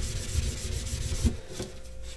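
Dry rubbing of gloved hands buffing graphite powder into a costume armor plate. The rubbing dies down about a second and a half in, leaving a fainter stroke or two.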